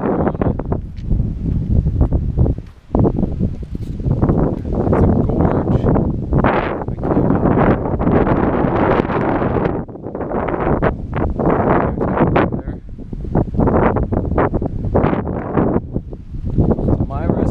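Wind buffeting the camera microphone, loud and gusty, rising and falling with a short lull about three seconds in.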